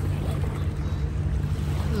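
Steady low hum of a boat engine running offshore.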